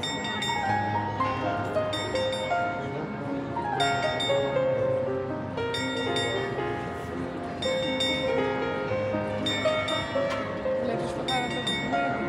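Background music: a melody of plucked-string notes, each starting sharply and ringing out, played at an even pace.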